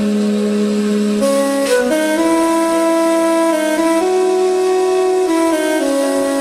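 Slow, relaxing instrumental music: an Indian-style flute melody of long held notes moving step by step over sustained lower notes.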